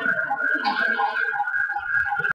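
Music, likely from a ceremonial band, with one long high note held throughout, over a murmur of voices.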